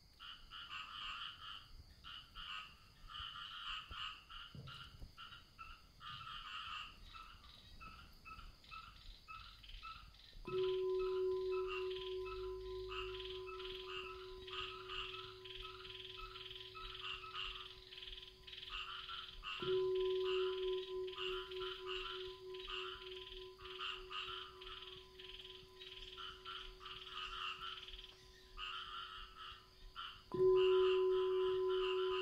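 A chorus of frogs croaking in rapid pulses throughout. About ten seconds in, and again about twenty seconds in, a singing bowl is struck and rings on with one steady tone.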